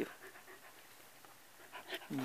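Faint panting of a Shetland sheepdog with its face close to the microphone.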